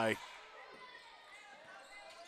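Faint sound of a basketball game in play in a gymnasium: a ball being dribbled on the hardwood court under a low crowd murmur.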